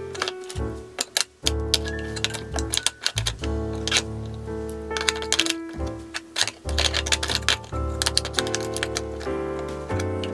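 Background music with held notes and a bass line, over irregular clicks and clacks of plastic makeup tubes, bottles and compacts being set down in a bamboo box.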